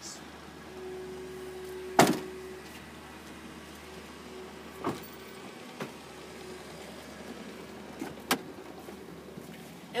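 A car's rear liftgate slams shut about two seconds in, with one loud bang, and a few lighter knocks and clicks follow over a low hum.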